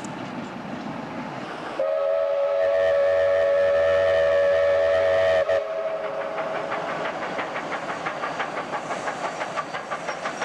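Steam locomotive's whistle blown in one long blast of about three and a half seconds, two close tones sounding together, a warning for the road level crossing. After it, the locomotive's exhaust settles into a steady chuffing of about four beats a second as it works along the line.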